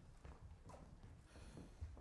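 Faint footsteps of people walking across a stage floor, a few soft low thumps, the strongest near the end.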